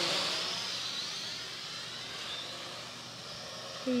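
MJX X601H hexacopter's six motors and propellers whirring steadily in flight, growing gradually fainter as it moves off.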